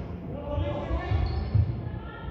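Thudding footsteps of players running on a sports hall floor, with players' shouted calls about half a second in, ringing in the large hall.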